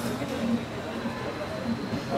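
Café room noise: indistinct background voices murmuring under a steady haze, with a faint, steady high whine.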